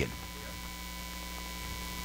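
Steady low electrical mains hum, with a faint higher steady tone over it, carried through the church's microphone and recording system.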